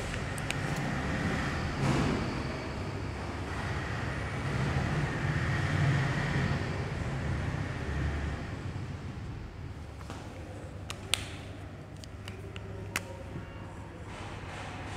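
Steady low background rumble while a marker draws on a whiteboard, with a few sharp taps of the marker tip against the board near the end.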